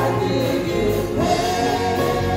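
Gospel praise-and-worship music: a man singing into a microphone with choir voices behind him, holding a long note from a little past halfway.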